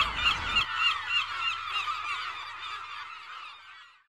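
Many short honking calls overlapping at once, loudest at first and fading away over about four seconds.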